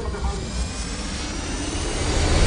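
A rushing, whooshing noise that swells steadily louder, building into background music near the end.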